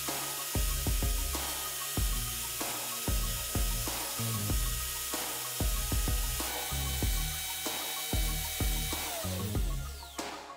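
Electric drill spinning a welding electrode while a knife edge is drawn against it, a steady grinding sound from the blade being sharpened on the rod's coating. Background music with a regular bass beat runs underneath.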